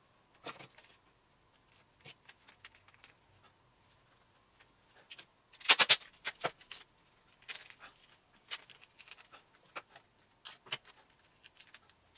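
Blue painter's tape being handled, pulled and pressed around a wooden base: scattered small crinkles and clicks, with a louder ripping rustle about six seconds in.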